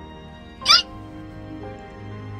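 Background music with one short, loud, high-pitched cry, much like a meow, well under a second in.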